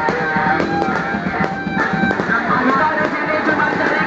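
Live rock band playing: electric guitars and a drum kit.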